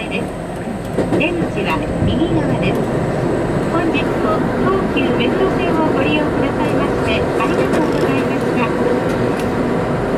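Commuter train running, heard from inside a crowded car, with a voice speaking Japanese over the steady running noise. The running noise grows louder about a second or two in.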